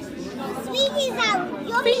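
Young children's voices: a small child calling out in a high, wavering voice, about a second in and again near the end, with other voices in the room.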